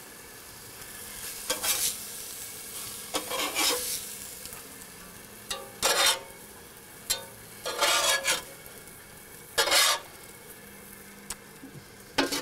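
Elk smash burger patties sizzling in a cast iron pan, with a metal spatula scraping under them about five times as the cooked patties are lifted out.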